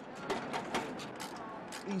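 Quick irregular metallic clicking and rattling as a nose piece is fitted and threaded onto the nose of a bomb by hand.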